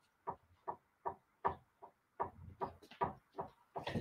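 A run of soft, short knocks and taps, about two or three a second, from someone moving about and handling things in the room.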